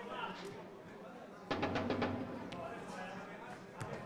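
Indistinct background talk of people nearby. About one and a half seconds in, a short, rapid rattle of sharp clicks is the loudest sound, followed by a few single clicks.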